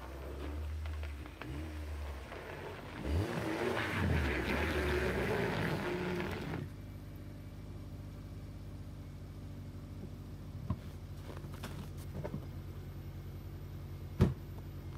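A small sedan's engine running in the cold. About three seconds in it revs louder for a few seconds as the car backs out through snow, then it settles to a steady idle, with two short clicks late on.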